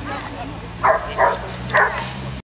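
A dog barking three times in quick succession, starting about a second in.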